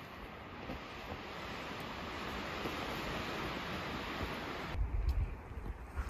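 Wind rushing steadily through the forest, a sound like surf. Near the end it gives way to a low rumble of wind buffeting the microphone.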